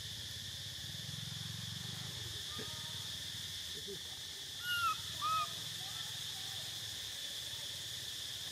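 Steady high-pitched insect drone of a forest chorus. About halfway through come two short calls that rise and fall in pitch, the loudest sounds here.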